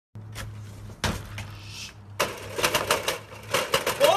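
A series of sharp clicks and knocks, a few scattered ones in the first two seconds and then a rapid run from about halfway, as a front door is unlatched and pushed open.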